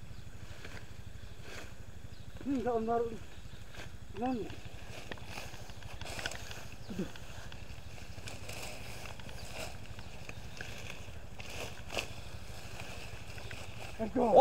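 Rustling and footsteps through tall grass and undergrowth over a low, steady background noise, with a few brief distant calls from a man's voice in the first half.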